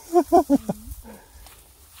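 A few short vocal sounds from a person in the first second, then only a low, quiet background.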